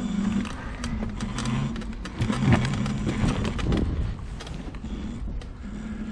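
Homemade three-wheeled electric mobility scooter running along a bumpy woodland path: a low motor hum that shifts in pitch, with irregular knocks and rattles from the wheels and frame. It grows quieter in the last second or two.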